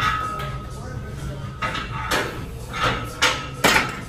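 Forceful breaths and grunts of effort through the last reps of a set of barbell curls, coming as a few short bursts in the second half, with a sharp knock near the end.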